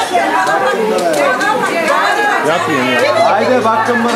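A loud babble of several people talking at once, overlapping voices with no music.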